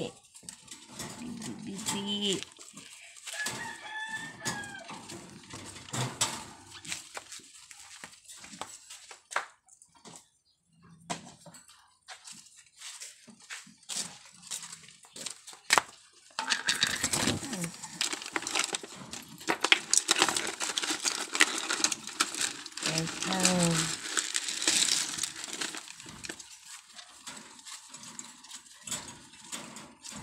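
Irregular clicks and rattles, densest in the second half, from a wire rabbit cage being handled, with a brief call that bends up and down about four seconds in.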